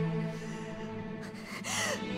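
A woman's sharp, breathy gasp near the end, over dramatic background music holding low sustained notes.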